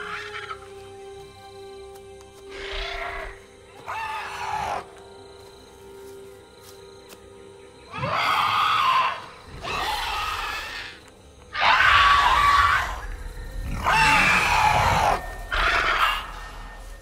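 A giant bird-of-prey creature screeching: two shorter calls around 3 and 4 seconds in, then a series of loud, long, rasping screeches from about 8 seconds in, over a sustained low note of film score.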